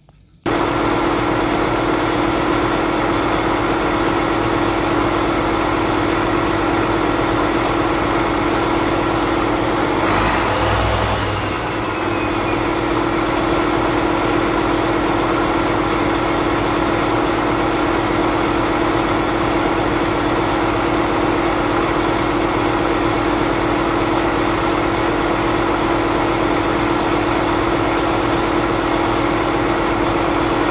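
Detroit Diesel Series 60 12.7-litre inline-six diesel running steadily on an engine dynamometer, with a strong steady hum through it. The steady sound is briefly disturbed and dips slightly about ten to twelve seconds in.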